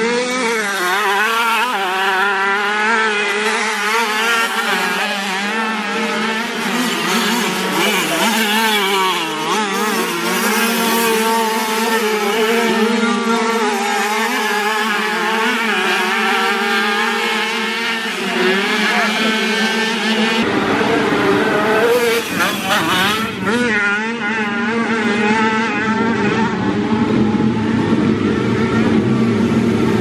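Several classic 50cc two-stroke motocross bikes racing, their engines heard together, each revving up and down as the riders work through the track.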